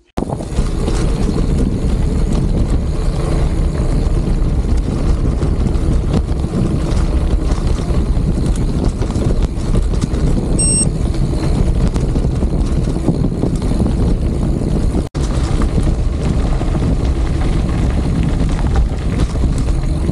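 Wind rushing over the camera microphone and bicycle tyres rumbling on a gravel dirt road during a fast mountain-bike descent. It is a loud, steady rush, heaviest in the low range, with a brief high chirp about halfway through and an instant's dropout about three-quarters of the way through.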